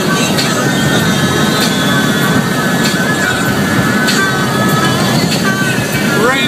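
Steady road and tyre noise inside a car moving along a wet highway, with music from the car radio playing underneath.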